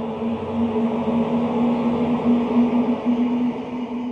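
Synthesized drone of a logo-intro sound effect, holding one low pitch steadily over a hiss and growing slightly louder.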